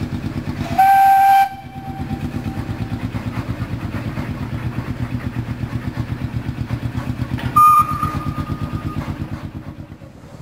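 Narrow-gauge steam locomotive working away with quick, even exhaust beats, about five a second. Its whistle gives a short blast about a second in and a second, higher-pitched blast near the end that trails off over about a second.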